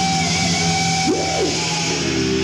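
Heavy metal band playing live, with electric guitar to the fore and one note bending up and back down about a second in.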